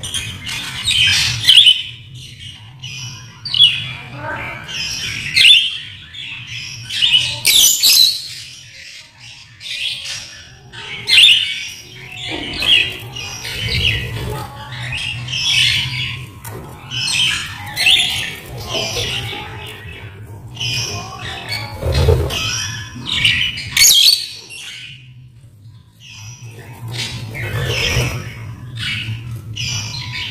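A mixed flock of caged budgerigars and lovebirds calling: repeated shrill chirps and squawks coming irregularly, a second or so apart, with a short lull a few seconds before the end.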